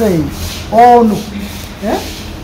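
A person's voice in a slow exchange: a falling sound at the start, one drawn-out syllable about a second in, and a rising sound near the end, over steady low background noise.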